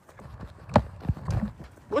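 A person running on foot, with irregular thuds and rubbing noise from a phone microphone jostled against clothing or a hand while it is carried.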